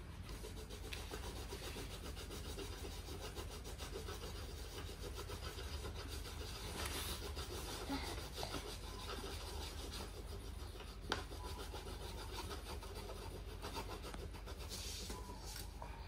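Faint, steady scratching of coloured pencils rubbing on paper as children colour, over a low steady hum, with one small tap about eleven seconds in.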